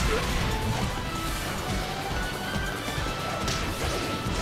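Anime fight-scene soundtrack: dramatic music under dense crashing and smashing impact effects, at a steady loudness.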